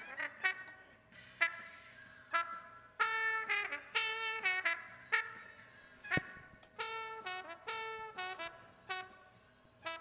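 A live trumpet heard alone through its stage-microphone channel, playing a run of short notes and brief phrases with gaps between them and a few sharp clicks in the gaps. The channel EQ's high-mid band is boosted by about 13 dB near 2 kHz, which pushes up the bright upper range of the horn.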